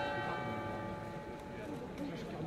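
A church bell struck once, its tone ringing on and slowly fading.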